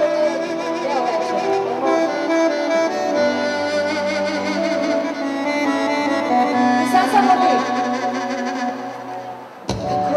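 Live band music, slow, with long held string-like tones, that briefly drops away just before the end.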